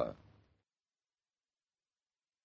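The last word of a man's radio announcement dies away within about half a second, then dead silence.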